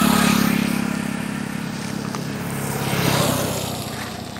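Motor vehicles passing close by on the road. One engine is loudest at the start and fades away, and a second one swells and passes about three seconds in.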